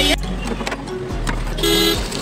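Busy street traffic noise, with a short vehicle horn honk near the end.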